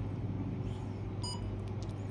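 A single short electronic key beep from a SOUTH N6+ total station's keypad as a key (ESC) is pressed, a little past halfway through, over a steady low hum.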